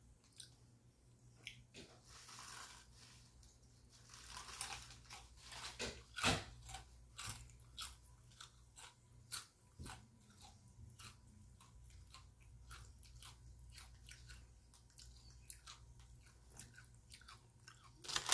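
A person crunching and chewing Fritos Chili Cheese corn chips, heard as a faint run of irregular crisp crunches. They are busiest and loudest in the middle and thin out towards the end.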